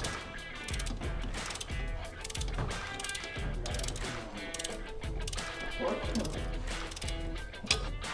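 Ratcheting torque wrench clicking in quick runs as the front shock absorber's lower bolts are tightened, with background music underneath.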